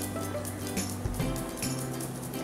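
Background music with sustained bass notes that change a few times.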